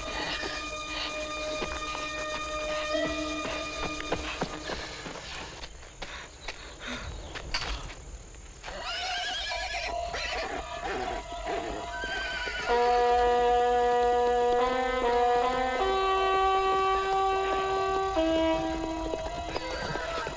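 Film soundtrack: sustained orchestral score, with a run of irregular knocks a few seconds in and a horse whinnying about nine seconds in. The music then swells into loud held chords.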